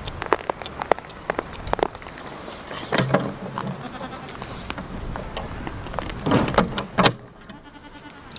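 Goats bleating at close range, with irregular clicks, knocks and rustles, the loudest burst near the end.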